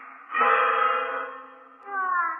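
Old Beijing opera record: a single steady held note starts sharply about a third of a second in and fades away over about a second, with the opera's gliding vocal line returning near the end.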